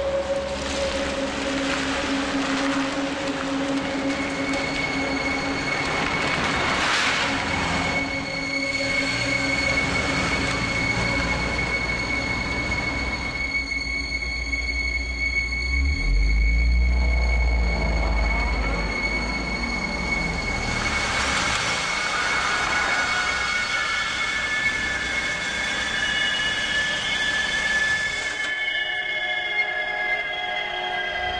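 Train rolling along rail-yard tracks with a low rumble and a long, steady high-pitched wheel squeal that slides slightly down in pitch near the end.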